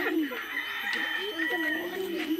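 A rooster crowing once, a long drawn-out call lasting over a second, heard behind a woman talking.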